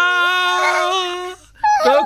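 A man's voice holding one long, loud sung note with a slight waver for over a second, then breaking off; another sung phrase starts just before the end.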